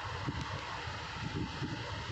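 Steady background noise with no speech: a low rumble with faint irregular low flutter under an even hiss.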